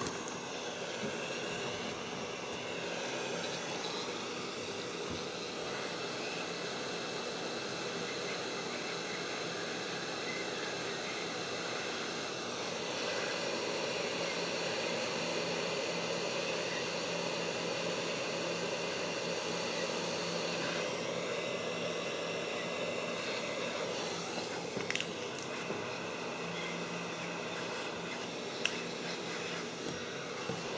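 Hot-air heat gun blowing steadily as it shrinks heat-shrink tubing over soldered wire joints: a steady fan whir with a few steady tones in it, its sound shifting slightly twice in the middle.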